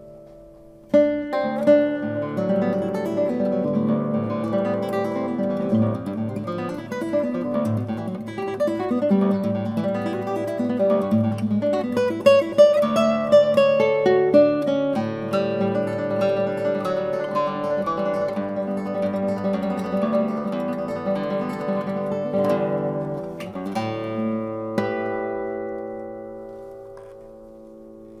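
Solo Arcángel classical guitar playing a passage of plucked notes and chords. A note dies away, a loud chord opens the passage about a second in, and a last chord is left ringing near the end.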